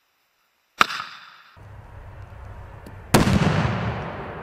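Two blasts from explosive blast simulators on an obstacle course: a sharp bang about a second in, then a louder blast about three seconds in whose noise trails on past the end.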